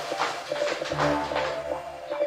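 Quick, uneven soft taps of a football being passed rapidly from foot to foot, over background music.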